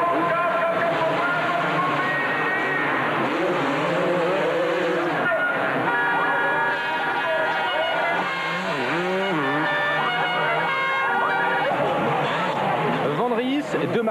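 250cc two-stroke motocross bikes racing, engines revving up and down as they accelerate and corner. Through the middle a high engine note holds steady for several seconds.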